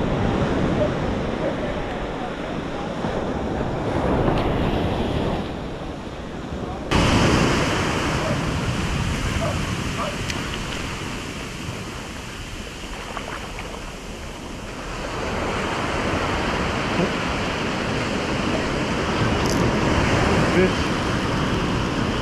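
Ocean surf breaking and washing up the sand, swelling and easing, with wind on the microphone. The sound turns suddenly louder and hissier about seven seconds in.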